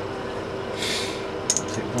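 Small metal clicks about one and a half seconds in, as the valve keepers are lifted off a valve of the cylinder head with a magnet. A short breathy hiss comes just before them, over a steady background hum.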